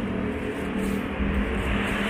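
Street traffic: the steady hum and low rumble of a motor vehicle's engine on the road alongside.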